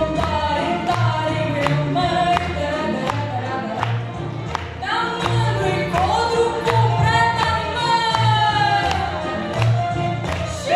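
Singing with instrumental accompaniment: a melody held in long, gliding notes over a steady, evenly repeating bass and beat.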